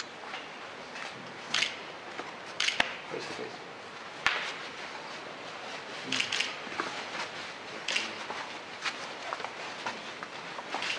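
Steady background hiss of a room with several short, sharp clicks scattered through it.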